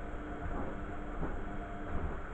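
Beko front-loading washing machine on a wash cycle: its motor hums steadily while the drum tumbles wet laundry, with a soft swish repeating about every two-thirds of a second.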